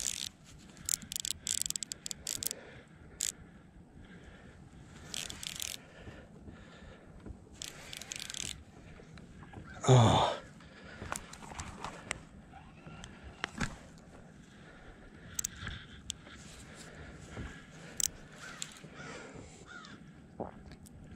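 Baitcasting reel being cranked while fighting a big hooked bass, heard as short, irregular bursts of clicks.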